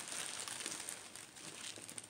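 A handmade shaker card being shaken and handled: faint, irregular crinkling and light rattling from the loose bits inside its clear plastic window.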